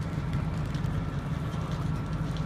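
Fire engine's engine running steadily: a low rumble with a fast, even pulse, and faint crackling above it.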